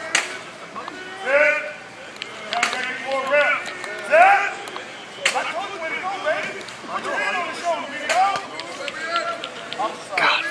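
Men shouting on a football practice field, overlapping calls and commands without clear words, broken by a few sharp smacks a couple of seconds apart as linemen's hands and pads collide in blocking drills.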